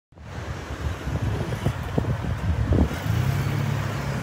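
Motor vehicle engine noise: an uneven low rumble that settles into a steady low hum about three seconds in.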